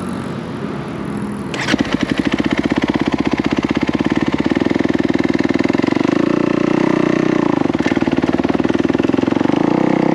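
A dirt bike engine comes in abruptly about two seconds in, then runs steadily at low revs with an even, rapid firing beat as the bike moves off.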